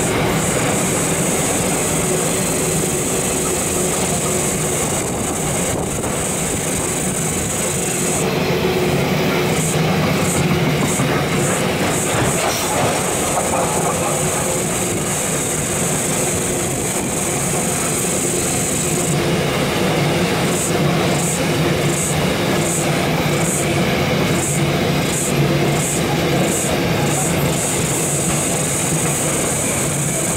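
A long freight train of loaded container wagons rolling steadily past, steel wheels running on the rails. Over it is a high-pitched shrill that holds steady for long stretches and breaks into rapid regular pulses at times.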